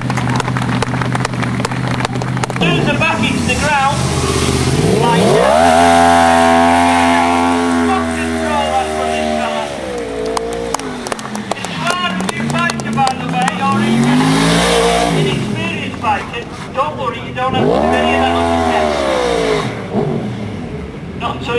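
Sports motorcycle engine revved hard and held high while the rear tyre spins in a smoky burnout, then the revs drop. Two more shorter revs follow, each rising and falling.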